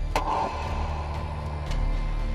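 Post-production suspense sound effect: a quick falling whoosh near the start, then a low steady drone.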